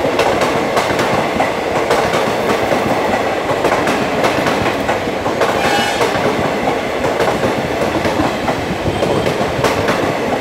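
Passenger coaches of an Indian Railways express train passing close by at speed: a loud, steady rush of wheels on rail with rapid, irregular clicks as the wheels cross the rail joints.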